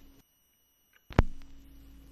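Faint vinyl record surface noise with a steady low hum, which drops to dead silence for about a second. Then a single sharp click sounds and the surface noise and hum return. This is the gap between two tracks on the disc.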